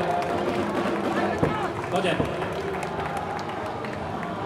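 Scattered hand-clapping from a street crowd, irregular claps mixed with people talking.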